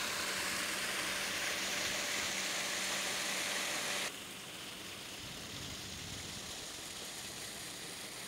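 Water pouring from a small stone fountain spout into a shallow pool, a steady splashing hiss with a faint hum beneath it. It cuts off about four seconds in, leaving quieter outdoor background noise.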